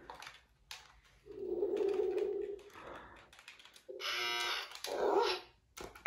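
Light plastic clicks and taps from a handheld toy game being worked with a stylus, with a steady low vocal sound about a second in and a second, brighter vocal sound about four seconds in.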